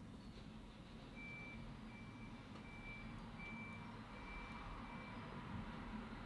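Faint electronic beeper: six short, evenly spaced high beeps, a little over one a second, starting about a second in and stopping near the end, over a low steady hum.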